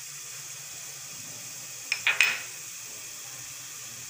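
Oil sizzling steadily under fried onions in a non-stick pot, just after red chili powder has gone in. About halfway through comes a short, louder scrape, the wooden spatula working in the pan.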